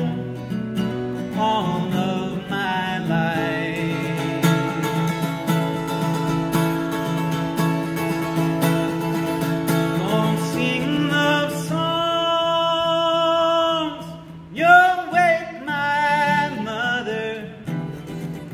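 Solo male voice singing long held notes over a fingerpicked steel-string acoustic guitar, unamplified with no microphone and heard from the audience in a concert hall's natural acoustics. The music drops briefly about three-quarters of the way through before the singing picks up again.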